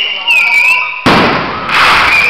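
Aerial fireworks display: a loud shell burst about a second in, then a second burst with crackling near the end.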